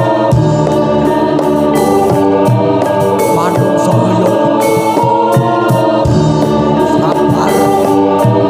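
Live Javanese kuda kepang (jaranan) accompaniment music, loud and continuous: held organ-like keyboard tones over a bass line, with regular drum and percussion strokes and singing voices.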